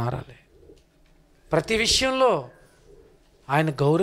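A man preaching into a microphone, in two short spoken phrases with pauses between them.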